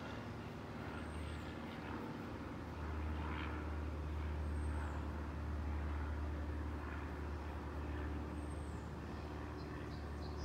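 Steady low background rumble, with a few short, faint high chirps.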